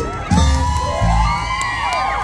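Live mor lam band music with a deep bass beat, while a crowd cheers and whoops; many rising and falling high calls overlap.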